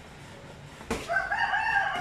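A rooster crowing: one long crow that begins about a second in and trails off just after. It is preceded by a single sharp smack of a boxing glove landing.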